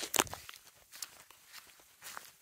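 Footsteps on grass: a few soft steps just after the start, the first the loudest, then only faint rustling.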